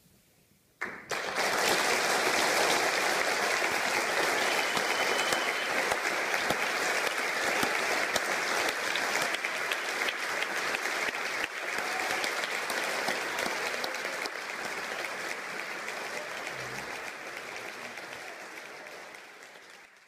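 A concert hall audience applauding. The applause breaks out suddenly about a second in, after a near-silent pause, holds steady and slowly dies away toward the end.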